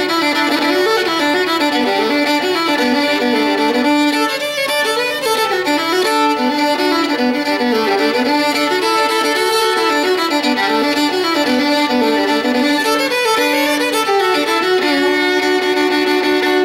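Solo fiddle playing a lively old-time tune, a steady low note ringing under the moving melody, settling onto a held double stop near the end.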